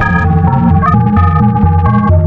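Electronic music: held organ-like keyboard chords changing in steps over a heavy, steady bass line, with no singing.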